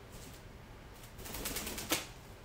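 A toucan flapping its wings in a quick flurry at its bath tub, getting louder, and ending in one sharp knock as it lands on the tub's plastic rim.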